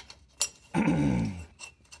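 A man clears his throat in a low, falling grunt, just after a sharp metal click from a bolt being fitted into the brake drum.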